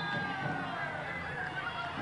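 Steady, low ambient noise of a small football ground's crowd and pitch, with a faint distant voice calling out in the first second.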